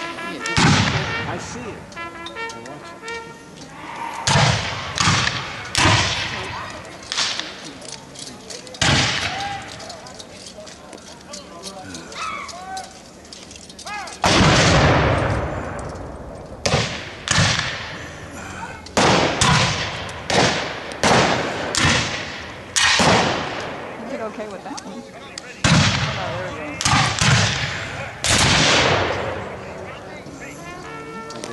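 Black-powder rifle-muskets firing blanks in a scattered skirmish: about twenty separate reports at irregular intervals, each with a short echo. A louder report with a longer ring comes about 14 s in, and the shots come thicker from about 17 s on.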